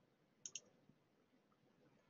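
Near silence with a faint double click, two quick clicks about half a second in.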